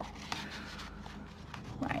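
Faint rustle of a stack of small paper cards being handled, with a couple of light clicks as they shift in the hands.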